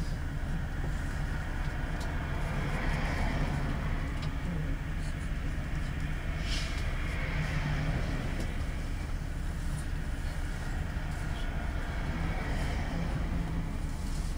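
1999 Isuzu Cubic KC-LV380N city bus's diesel engine idling steadily while the bus stands still, heard from inside the passenger cabin.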